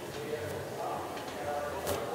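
Indistinct voices in a large indoor track arena, with one sharp click or clap near the end.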